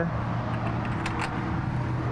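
Steady low mechanical hum, like a motor running nearby, with no distinct clicks or knocks.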